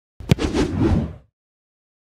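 Intro logo sound effect: a sharp whack of a kicked football about a third of a second in, inside a whoosh that fades out after about a second.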